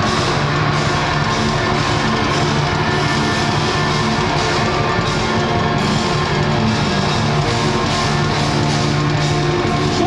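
Live punk-rock band playing loudly on stage, with electric guitars and a drum kit going together without a break.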